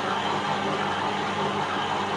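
Electric stand mixer motor running at a steady speed, its beater churning a thick buttery dough in a stainless steel bowl: a constant hum with an even whirring noise over it.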